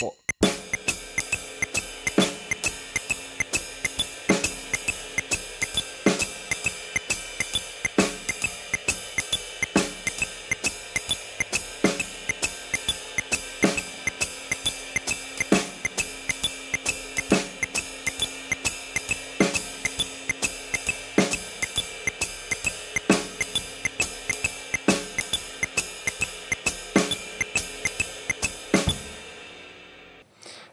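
Jazz drum kit playing a swing groove on ride cymbal and hi-hat, with single snare strokes comped underneath on the eighth-note positions. Stronger accents fall about every two seconds, and the playing fades out near the end.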